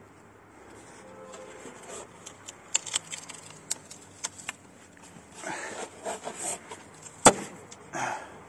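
Extruded polystyrene (Penoplex) foam board crackling and creaking with a series of sharp clicks as it is pressed under a boot, then breaking with one loud sharp crack near the end. The board itself snaps while the foam-glued joint holds.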